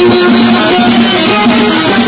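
Loud amplified live band music, with a string instrument's melody stepping from note to note over a dense, steady backing.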